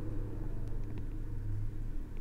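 A steady low hum with a few faint light taps of a stylus writing on a tablet screen.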